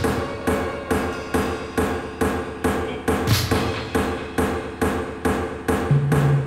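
Experimental tribal electronic music built on Linn drum machine percussion: a dry knocking pattern of about two and a half hits a second over held synth tones, with the bass drum dropped out.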